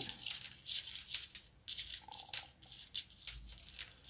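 Metal knitting needles clicking lightly against each other as stitches are worked, with a soft rustle of yarn: a run of small, irregular ticks.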